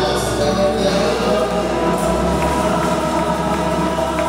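Church congregation singing a gospel hymn together in chorus, with hand-clapping.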